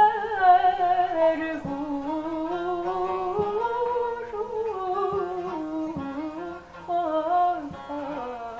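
A woman singing a Turkish folk song (türkü) in a wavering, ornamented line, accompanied by a bağlama (long-necked saz) plucked in sharp strokes.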